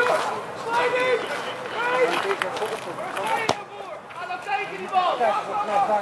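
People talking and chatting, with one sharp click or knock about three and a half seconds in.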